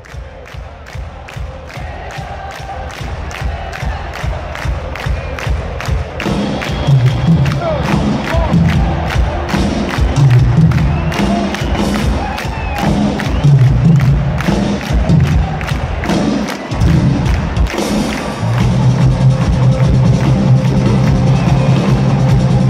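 Live rock band playing in a large arena over a cheering crowd, recorded from the stands: a steady beat that swells in loudness, with bass and the full band coming in about six seconds in and the music growing louder to the end.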